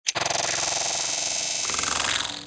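Synthesized intro sound effect: a short click, then a steady, dense electronic buzzing tone that holds an even level.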